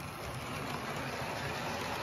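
Model train running along its track: a steady rolling noise of the small electric motor and the wheels on the rails, growing slightly louder as it comes past.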